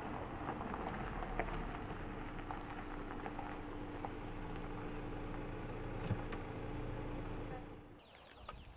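A Kia compact coupe rolling slowly across loose gravel: a steady engine hum with scattered crisp ticks of gravel under the tyres. The sound drops away suddenly near the end.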